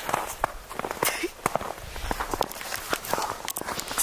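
Footsteps walking on a snow-covered path: an uneven run of short, crisp steps.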